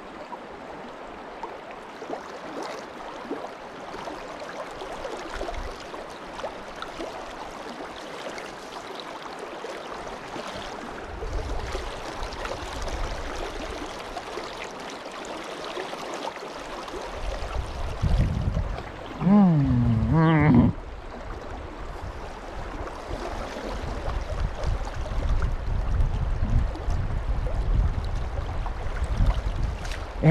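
Creek water running steadily over a shallow rocky bed. A low rumble joins in the second half, and about two-thirds of the way through a person's voice is heard briefly, without words.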